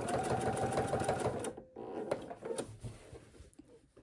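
Husqvarna Viking sewing machine running fast, straight-stitching (thread painting) along the edge of an appliqué, for about a second and a half before stopping abruptly.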